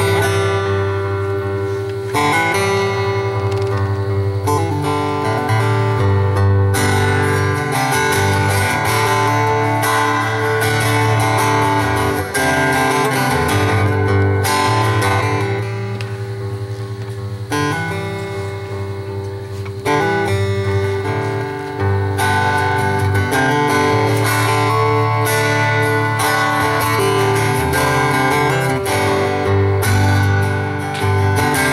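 Steel-string acoustic guitar played solo, strummed chords ringing on with a softer stretch just past the middle.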